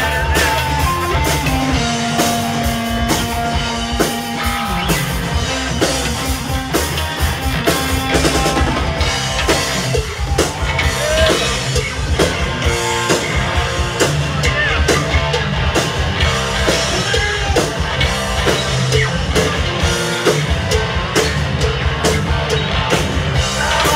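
Live rock band playing: electric guitars and electric bass over a drum kit keeping a steady beat.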